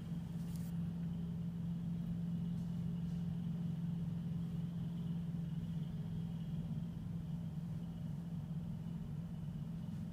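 Steady low background hum with a faint high tone above it, unchanging throughout.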